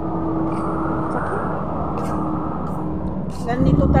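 Steady road-traffic noise with a faint steady hum. A woman's voice comes back near the end.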